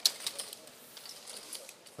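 Poker chips clicking together as a pot is raked in and stacked: one sharp click at the start, then scattered light clicks.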